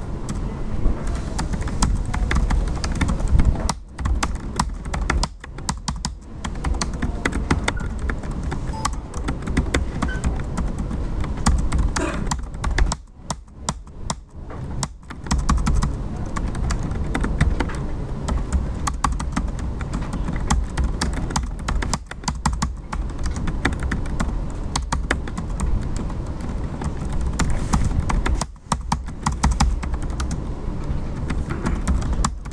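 Fast typing on a computer keyboard: rapid runs of keystroke clicks with a short pause about halfway through.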